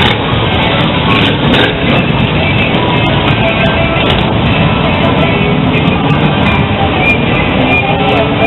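Loud, steady street din: music playing over traffic noise and a background of voices.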